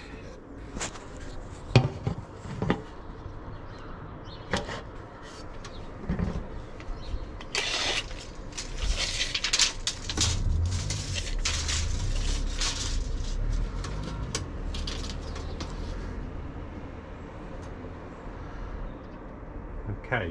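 Handling noise from a tape measure being run out and held across wooden bed slats: scattered clicks and knocks, one sharp click about two seconds in, then a long stretch of rustling and shuffling over a low rumble as he leans in to read it.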